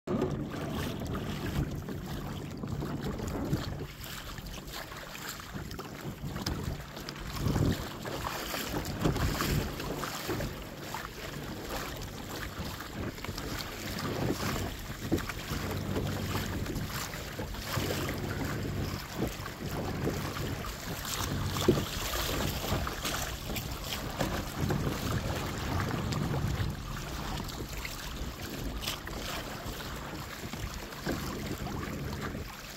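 Wind buffeting the microphone in uneven gusts, with water splashing against the hull of a Hobie sailing kayak on choppy water.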